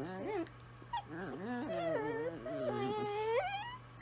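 Two Italian Greyhounds howling together in wavering, whining tones. A short rising call comes at the start, then after a brief pause a longer call of two overlapping voices that bends up and down and ends on a rise.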